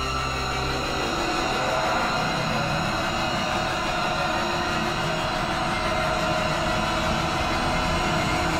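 Dramatic TV-serial background score: a dense, sustained swell of held tones over a steady noisy rumble.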